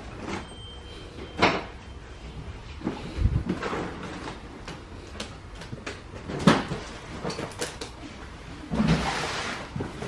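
Intermittent knocks and clatter of objects being handled, the sharpest knock about six and a half seconds in, and a longer rattling clatter near the end.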